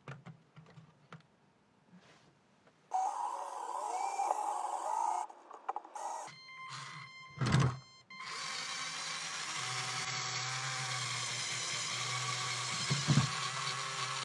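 Small electric motors of a LEGO Technic climbing robot whirring as its wheels drive it up a stack of boards, starting about three seconds in after a few light clicks, breaking off briefly and then running steadily. Two thuds as the wheels bump against the stack.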